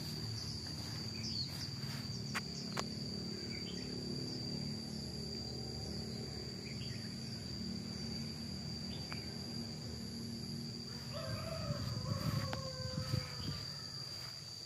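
Outdoor ambience dominated by an insect's steady, unbroken high-pitched trill, with a few short, quick bird chirps over a low hum. Near the end a few sliding calls and sharp clicks stand out.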